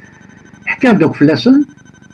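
A brief spoken utterance of under a second over a video-call line. Just after it comes a faint, steady high-pitched tone that sounds like a telephone tone.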